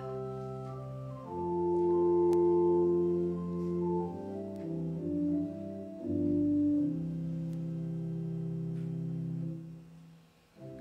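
Organ playing the introduction to a hymn in sustained chords that change every second or so, ending on a long held chord that releases just before the end.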